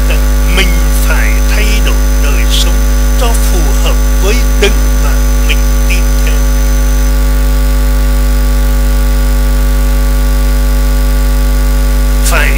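Loud, steady electrical mains hum, a constant low drone with a ladder of overtones, filling the pause in the sermon. Faint bits of voice come through over it in the first half.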